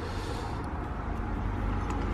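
Steady low background rumble, with no distinct clicks or knocks.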